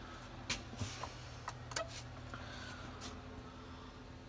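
Faint steady low electrical hum from a CNC machine's powered-up drive cabinet, with a few soft clicks scattered through it.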